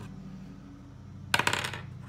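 A small die tossed onto a tabletop: a quick clatter of several clicks, about half a second long, a little past halfway through, over a steady low hum.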